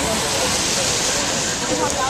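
Steady rushing of wind through tree leaves as a severe storm approaches, with faint voices of a crowd underneath.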